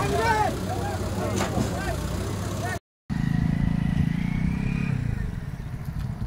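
A diesel engine running at a backhoe loader while a crowd of men talk and shout over it. After a brief break the engine is heard running more strongly on its own, with a thin high whine that rises slightly near the end.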